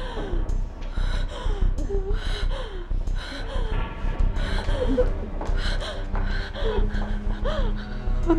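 Women gasping and sobbing in distress in rapid, repeated breaths broken by short wavering cries, over a dramatic music underscore.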